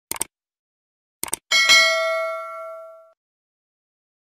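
End-card sound effects for a subscribe button and notification bell: two quick double clicks about a second apart, then a bright bell ding that rings out for about a second and a half.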